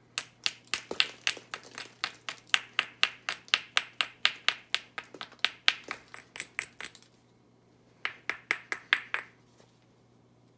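Rapid light taps of a hammerstone on the edge of a piece of Onondaga chert, about four a second for some seven seconds, then a short run of about six more. Each strike gives a sharp, ringing clink.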